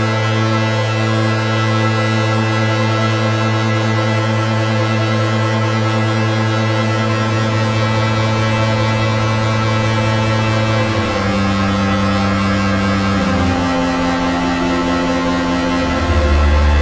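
Behringer Neutron analogue synthesizer holding a low, sustained bass drone with many steady overtones. It stays on one note for about eleven seconds, then steps to different notes twice near the end.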